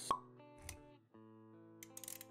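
Intro sound effects over background music: a sharp pop right at the start and a softer pop a little over half a second in, while music with held notes plays, stops briefly at about one second and comes back.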